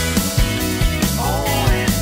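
Rock band music: electric guitars over bass guitar and a steady drum beat, in an instrumental passage. A lead line bends in pitch a little after halfway through.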